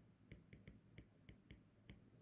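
Faint, sharp clicks of a stylus tapping and lifting on a tablet screen while a word is handwritten, about eight at uneven intervals.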